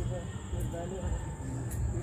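Distant voices of people talking over a steady high chirring of insects, with a low rumble in the background.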